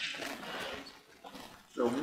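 Bible pages rustling and being turned for about the first second, a dry papery noise, then quiet before a man's voice starts near the end.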